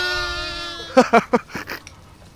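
A young lamb bleating: one long, steady bleat that fades away over the first second, followed by three short, quick bleats.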